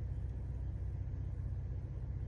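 Low, steady rumble of a car's idling engine, heard inside the cabin.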